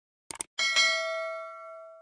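Subscribe-button animation sound effect: a quick mouse click, then a small notification bell dings about half a second in and rings down over about a second and a half.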